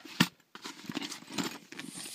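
Handling noise from a canvas handbag being moved about: one sharp click about a quarter second in, then soft rustles and light taps.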